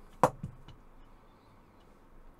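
A sharp click about a quarter second in, then a fainter knock, as a plastic phone tripod with its phone clamp is picked up and handled; quiet handling follows.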